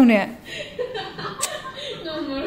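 A person's voice chuckling and talking, loudest at the very start and falling in pitch, then quieter talk. One sharp click about one and a half seconds in.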